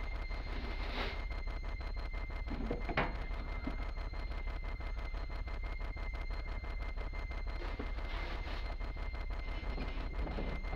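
A steady low hum with a faint high whine, and a single sharp click about three seconds in.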